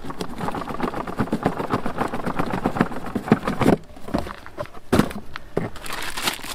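Cardboard rubbing and scraping as a tight-fitting box lid is worked off, then a paper instruction sheet rustling as it is lifted out: a dense run of small crackles with a few sharper knocks about four and five seconds in.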